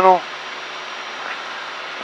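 Steady in-flight cabin noise of a Cessna 172, its engine and airflow heard as an even hiss.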